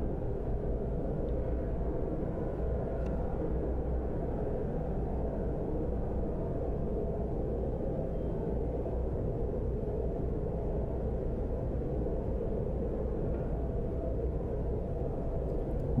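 A steady low rumble of background noise at an even level, with no distinct events in it.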